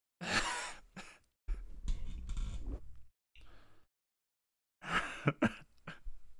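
A man clearing his throat and coughing close to the microphone, in two short bouts near the start and near the end, with a stretch of low rumbling handling noise in between.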